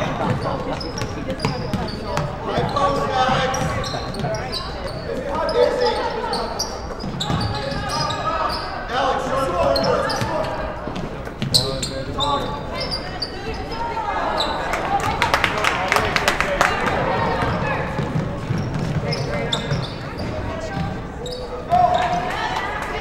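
Basketball game sounds in a gym: a ball dribbled on the hardwood court, with indistinct voices of players and spectators calling out.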